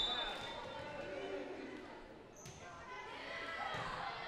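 Volleyball being bounced on the gym's hardwood floor, with one sharp knock about two and a half seconds in, over a low murmur of voices echoing in the gym hall.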